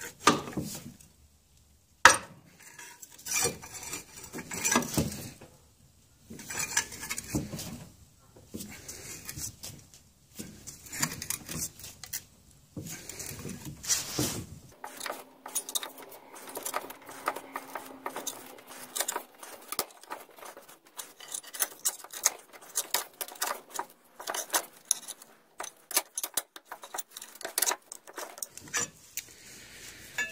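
Metal tools clinking and scraping on an aluminium outboard gearcase as a pry bar works the old water pump impeller and plate up off the driveshaft. There is a sharp metallic knock about two seconds in, and a quicker run of light clicks in the second half.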